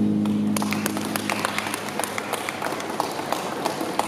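A sustained guitar chord fading out, followed by scattered audience applause, irregular hand claps that go on to the end.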